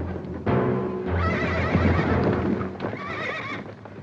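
Several horses galloping, with hoofbeats and a horse whinnying, over orchestral film music that swells about half a second in.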